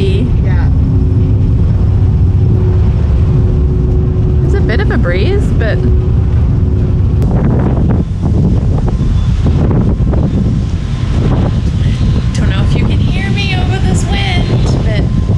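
Steady low rumble of a ferry underway heard from its open deck, with wind buffeting the microphone. A steady machinery hum runs through the first half and stops about halfway, when the sound changes.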